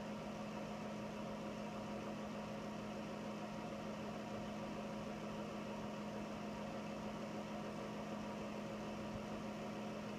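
A steady room hum from some running machine: one strong low constant tone with fainter steady tones above it, unchanging throughout.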